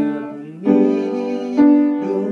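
Upright piano played slowly: chords struck about a second apart, each left to ring and fade before the next.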